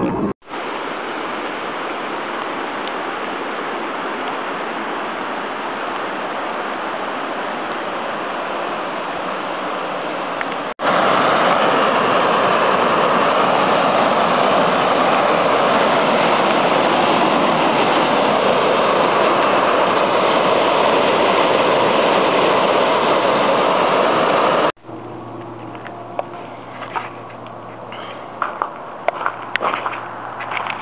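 Steady rushing noise, then after a sudden cut about eleven seconds in a louder steady rush of river water running over a rocky bed. About twenty-five seconds in it cuts to a quieter stretch with a low steady hum and scattered clicks.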